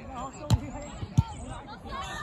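Volleyball struck by hand on a serve: two sharp smacks about two-thirds of a second apart, the second the louder.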